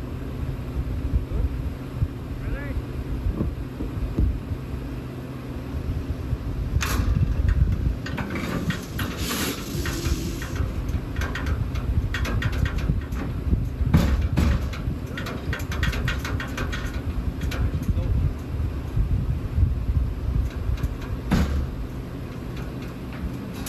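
Vehicle engine idling with a steady hum, over wind rumble on the microphone. Sharp metallic knocks and clatter come about seven seconds in, again near the middle and near the end, fitting the culvert trap's door being worked open.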